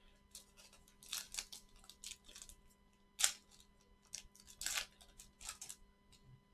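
Trading-card packaging handled by gloved hands: a plastic card sleeve and a foil pack crinkling and rustling in a series of short bursts, the sharpest about three seconds in and again near five seconds.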